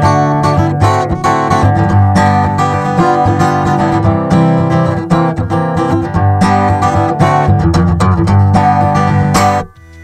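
Acoustic guitar strummed continuously in chords, amplified through a piezo contact pickup housed in a bottle cap stuck to the guitar's body. The strumming stops abruptly just before the end.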